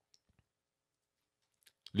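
Near silence with a few faint, short clicks, then a man's voice starts speaking right at the end.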